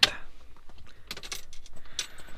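A quick run of small, sharp metallic clicks and rattles about a second in, from hands handling the cockpit controls and hardware.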